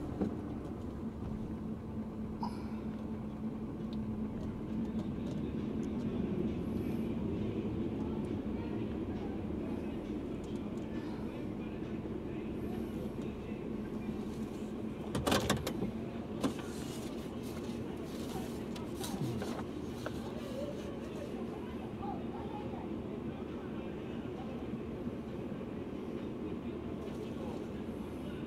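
Steady hum of a car driving slowly, heard from inside the cabin, with a brief louder noise about fifteen seconds in.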